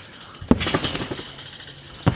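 A jumper landing on a backyard trampoline: one thump about half a second in, followed by a brief metallic rattle of the steel springs.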